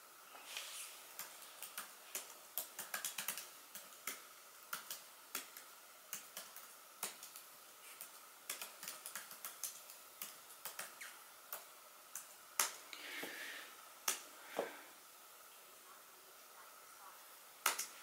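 Typing on a laptop keyboard: irregular keystrokes in short quick runs, then a pause of a couple of seconds near the end and a single keystroke just before it ends.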